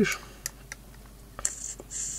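A few small, separate clicks of a vape box mod's buttons being pressed while the wattage is set, with a short airy hiss near the end.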